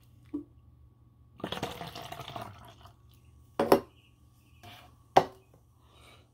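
A brief rustle about a second and a half in, then two sharp clicks, about a second and a half apart, over a faint steady electrical hum.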